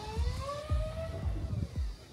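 Segway's electric motors whining as it rolls forward from a standstill; the pitch rises with speed, then levels off and fades about halfway through.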